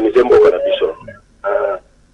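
Speech only: a voice talking for about a second, then a pause and one short phrase about a second and a half in.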